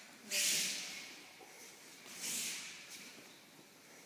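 Two sharp hissing swishes about two seconds apart, each fading over about half a second, made by an aikido teacher's pivoting body turn; the first is the louder.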